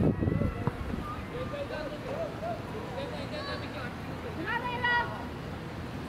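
Distant voices of spectators and players calling across an open field, with one louder high-pitched shout about five seconds in. A low rumble of wind on the microphone at the very start.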